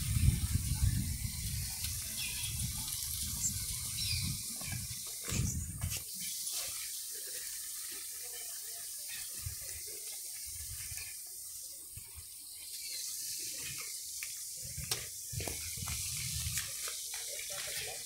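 Steady rushing of a broad river flowing under a suspension footbridge. Low buffeting rumbles in the first six seconds stop abruptly about six seconds in.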